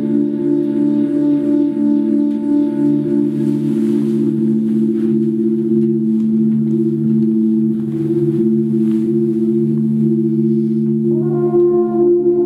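Free-improvised ensemble music: several long, steady low tones layered into a drone. About eleven seconds in, a higher note slides up and joins it.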